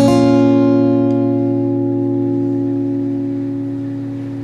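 Closing chord of a song's accompaniment strummed on an acoustic guitar right at the start, then left to ring out and fade slowly.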